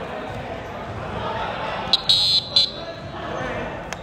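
A referee's whistle in the gym gives a short, high, shrill blast about two seconds in, broken into quick bursts and heard over the hall's court noise. It stops play for a held ball that is called a jump ball.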